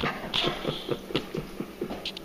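A man chuckling in a run of short breathy pulses, about five a second, while a dog shuffles about on a tile floor.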